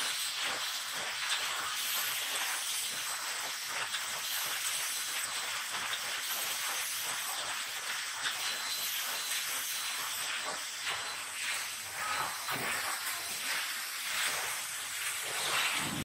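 Steady hiss of factory machinery from an automated solar-cell layup line, with faint high-pitched whines that come and go and scattered light clicks.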